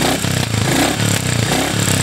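2022 Royal Enfield Classic 350's 349 cc air-cooled single-cylinder engine idling steadily, with an even run of exhaust pulses.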